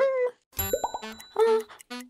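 A short playful cartoon sound-effect sting: a plop, then a ringing bell-like ding over a few bouncy musical notes.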